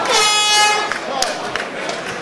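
End-of-round horn sounding for just under a second as one steady, rich tone, signalling the end of the round in an MMA bout.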